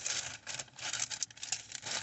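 Plastic shopping bag rustling and crinkling as items are rummaged through, with irregular crackles.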